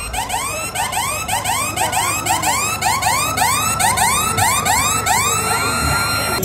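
Electronic siren sound effect played over a concert PA: quick rising whoops, about three a second, that merge into one held steady tone near the end.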